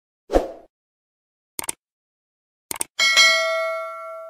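Subscribe-button animation sound effects: a short whoosh, then two quick double clicks about a second apart, then a bell-like ding about three seconds in that is the loudest sound and rings on, fading out.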